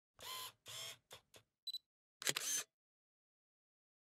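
Camera sound effects on a title card: two short whirs and two small clicks, a short high beep like a focus-confirm signal, then a quick cluster of shutter clicks about two and a half seconds in.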